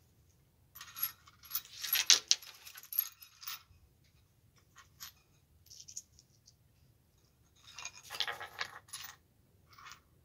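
Small hard objects clinking and rattling as they are handled by hand, in two bursts: one about a second in lasting a few seconds, another about eight seconds in, with scattered single clicks between.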